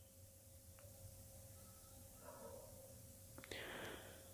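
Near silence: faint room tone with a steady low hum, and a faint breath near the end.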